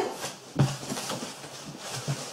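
Quiet rustling and handling of a cardboard shipping box lined with bubble wrap as it is tilted open.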